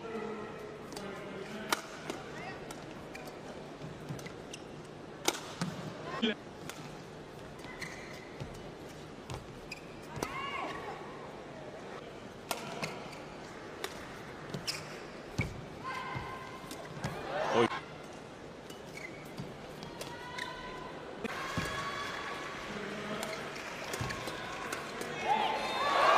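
Badminton rallies on an indoor court: scattered sharp racket strikes on the shuttlecock at irregular intervals, with short high squeaks of court shoes as the players lunge and turn, over a steady arena background.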